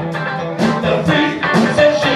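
Live funk and soul band playing with a steady drum beat, electric guitar and a singing voice.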